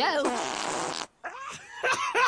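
Cartoon fart sound effect: a raspy blast lasting under a second, just after a short laugh.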